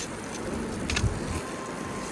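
Wood campfire crackling with a few sharp pops over a steady hiss, as a thick wagyu steak sears on the embers; a dull knock about a second in.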